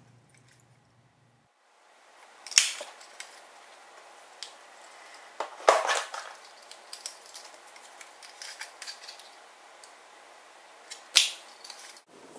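Cardstock and small craft tools being handled by hand: soft paper rustles with a few sharp clicks and taps, the loudest about six seconds in.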